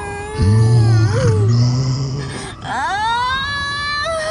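Long, drawn-out wailing cries that bend up and down in pitch, over a low steady hum. Near the end one long cry rises and then holds.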